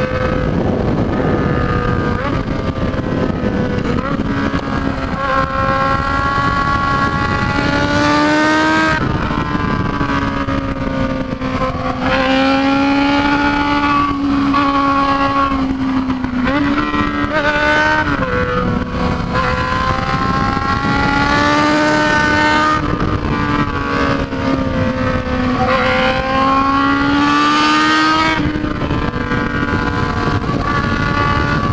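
Yamaha XJ6's inline-four engine running hard at highway speed, its note climbing and falling with the throttle and dropping sharply about 9 and 18 seconds in, over steady wind noise.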